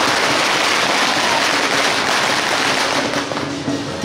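A string of firecrackers going off in a rapid, continuous crackle, easing off somewhat near the end.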